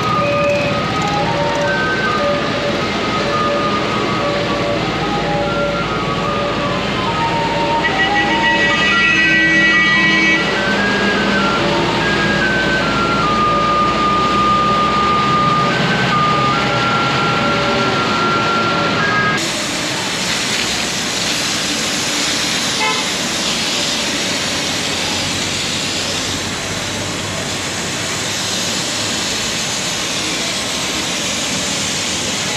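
Municipal street-washing truck running, with a simple melody of stepping single notes playing over it. After a cut about two-thirds in, a steady rushing hiss: a tanker's hose jet spraying water onto a paved footpath, with the tanker's engine running.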